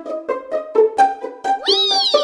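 Light plucked comic background music with short, evenly picked notes. About one and a half seconds in, a sound effect like a cat's meow rises and falls in pitch over the music.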